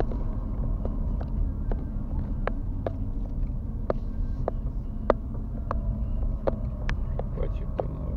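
Car driving, heard from inside the cabin: a steady low rumble of engine and tyres on the road, with irregular sharp clicks about twice a second.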